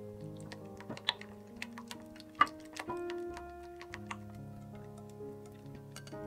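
Silicone spatula clicking and scraping against a saucepan as thick custard cream is stirred, with a sharp knock about two and a half seconds in. Background music with sustained notes plays throughout.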